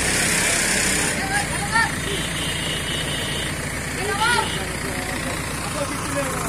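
Diesel engine of a hydra mobile crane running steadily during a lift, with a low, even pulse. Men's voices call out over it twice, about a second in and again past the four-second mark.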